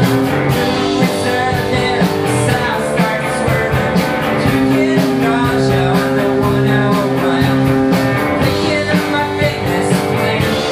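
A small rock band playing live: distorted electric guitars holding sustained chords over a drum kit, with steady cymbal hits.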